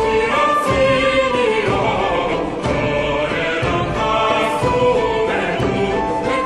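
Medieval Latin song sung by an early-music vocal ensemble over a low beat that falls about once a second.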